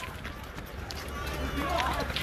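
Running footsteps and the knocking of a handheld camera, with a steady low rumble of wind and handling on the microphone. Voices shouting in the background grow louder in the second half.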